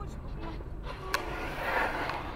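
Steady low road and engine rumble heard from inside a moving car, with a single sharp click about a second in and a short hissing swell near the end.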